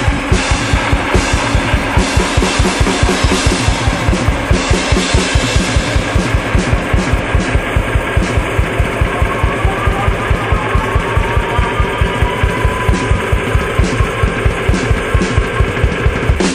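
Instrumental psychedelic blues-rock: drum kit, electric bass and guitar playing a fast, steady beat, with kick-drum hits about four or five a second and no vocals.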